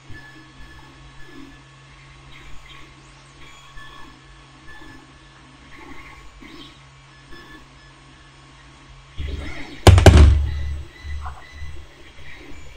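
Hands working on a table: a steady low hum with faint small handling sounds, then about nine seconds in a cluster of loud low thumps and knocks, the loudest about ten seconds in.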